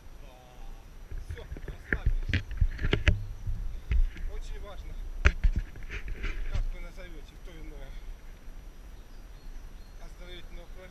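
A man's voice, indistinct, with a run of sharp knocks and thumps against the microphone in the middle and a low rumble underneath.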